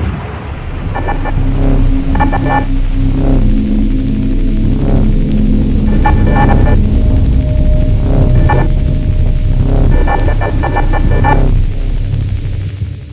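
Sound design under an animated channel logo: a loud, deep, steady drone with short clusters of high electronic tones breaking in every few seconds.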